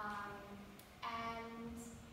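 A woman singing slow, held notes: a short note at the start, then a longer one held steady from about a second in.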